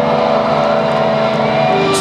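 Heavily distorted electric guitar played live at high volume, holding sustained droning notes. Near the end the held pitch drops to a lower note.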